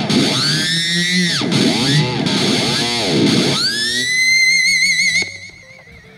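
Distorted electric guitar in C standard tuning playing high pinch-harmonic squeals. The pitch arcs up and down about three times, then climbs to a high squeal held with wide vibrato that fades out about five seconds in. Played without a wah, where such high squeals are really hard to get clean.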